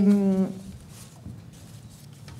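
A woman's drawn-out hesitation 'ehhh', held on one steady pitch that sags slightly, ending about half a second in; then quiet room tone.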